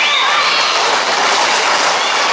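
Hooves of a tight pack of Camargue horses galloping on the asphalt road close by, a dense, steady, loud clatter, with a brief shout at the start.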